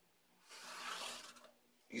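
Felt-tip pen drawing a line along a ruler on cardboard: one faint scratchy stroke of about a second.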